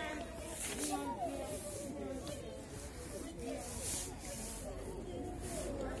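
Footsteps crunching on gravel in short, irregular hissy bursts, with faint distant talking underneath.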